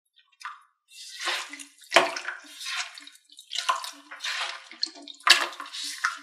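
Glitter slime squelching and crackling as hands knead and squeeze it: a run of irregular wet squishes, the sharpest about two seconds in and again near the end.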